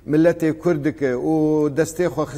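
Speech only: a man talking, with one long drawn-out vowel a little past the middle.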